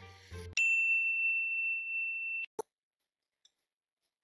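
An edited-in electronic beep: one steady high tone held for about two seconds that cuts off suddenly, with a single click just after. Near silence follows.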